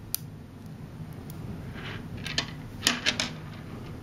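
Neodymium sphere magnets (Zen Magnets) clicking and snapping together as a cluster is handled. There is one sharp click just after the start, then a quick run of sharp clicks a little over two seconds in, the loudest near three seconds.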